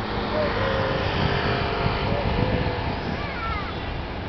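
Steady low rumble and hiss of a large passenger ferry's engines as it manoeuvres in harbour, with a few short distant voices over it.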